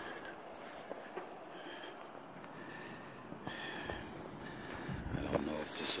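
Steady, faint outdoor background noise, with a man's voice coming in near the end.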